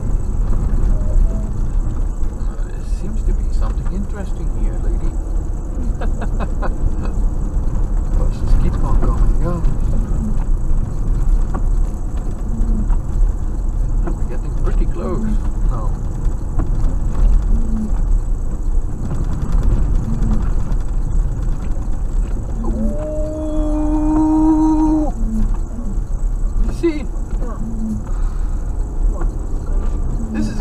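Car cabin noise while driving slowly on a gravel road: a steady low rumble of engine and tyres, with faint bits of voice. About three-quarters of the way through, one held note sounds for about two seconds.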